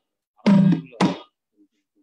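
A drum struck twice, about half a second apart, each stroke ringing briefly, then a pause in the playing. It is heard over a video call.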